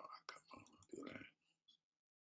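A person speaking very quietly, barely audible, for about a second and a half, followed by a couple of soft clicks.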